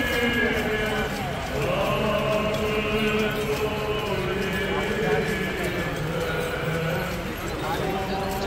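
Orthodox hymn singing, with long held notes, mixed with the voices of a crowd and the tapping of marching footsteps on the pavement.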